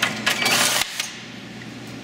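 Felins MS series banding machine running one banding cycle around a box: a short, loud mechanical whir as the band is tensioned, welded and cut, stopping abruptly just under a second in, followed by a small click.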